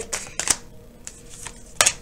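Oracle cards handled and shuffled in the hands, with a sharp card snap about halfway in and a louder clatter near the end as a drawn card lands on the glass-topped desk.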